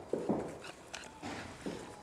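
Puppies yapping in several short bursts, with a thin high whine between them.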